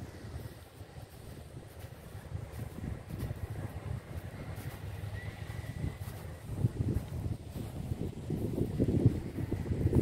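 Low, uneven wind rumble on a handheld phone microphone, with a few thumps from walking and handling, growing louder toward the end.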